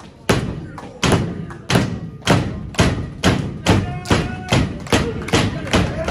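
Repeated stomps on a pro wrestling ring's canvas, a dozen heavy thuds at about two a second and getting a little quicker, each followed by a short echo.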